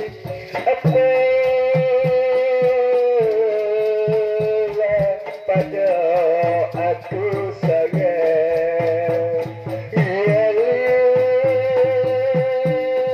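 Shadow-puppet theatre ensemble music: a reed pipe holds a sustained, wavering melody over regular drum strokes and a steady clink of small cymbals.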